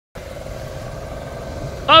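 Nissan car engine idling with a steady low hum. A man's voice comes in near the end.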